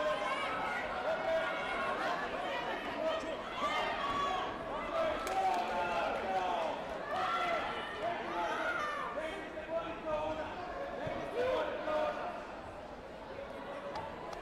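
Indistinct chatter of many overlapping voices in a large sports hall, with no single voice standing out; it quietens briefly near the end.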